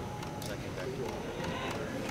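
Indistinct background chatter of people talking in a large hall, with a few faint clicks.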